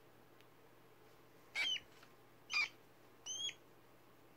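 A two-month-old pet rat giving three short, high-pitched squeaks, about a second apart.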